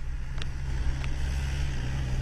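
Jeep engine running with a steady low drone, with a couple of faint clicks over it.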